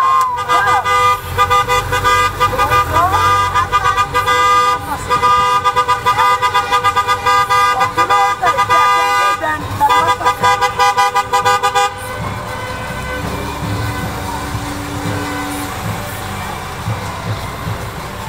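Several car horns honking together in long, nearly continuous blasts, a wedding-style convoy honk, that stop about twelve seconds in, leaving engine and street noise.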